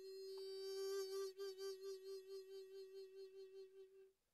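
Soundtrack music: a flute holds a single long, steady note, slowly fading.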